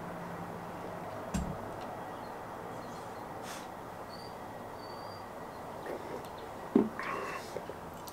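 A man taking a long drink of hazy IPA from a glass over steady room noise, a low hum stopping about a second in with a soft thump just after. A short knock comes near the end, as the glass is lowered.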